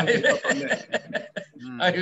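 Talking with chuckling laughter on a group video call.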